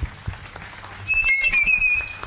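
A few scattered hand claps, then a loud, high-pitched whistle held for about the last second.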